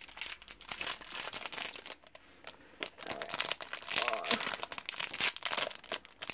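Foil blind-bag wrapper crinkling irregularly as hands work at opening it, with a quieter pause about two seconds in.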